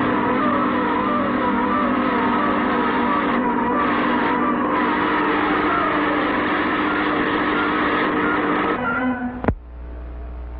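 Whirring, whining machine sound effect of a spinning centrifugal table, with a steady hum under repeated wavering pitch glides. It cuts off abruptly near the end, followed by a single sharp click.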